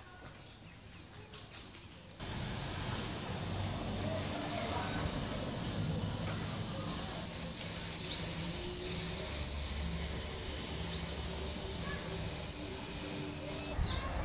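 Street background noise: a steady low engine hum of road traffic that starts abruptly about two seconds in, with faint bird chirps over it.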